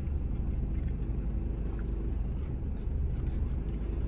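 Mitsubishi Fuso large truck's diesel engine idling steadily, a low even rumble heard from inside the cab.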